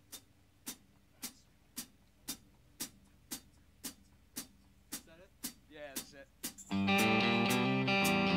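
Steady sharp clicks about two a second set the tempo, then about seven seconds in the full band comes in loudly with guitars, bass and drums, keeping the same beat.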